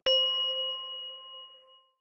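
A single bright chime struck once, ringing in a few clear tones and fading out over about two seconds: the channel's logo sting closing the segment.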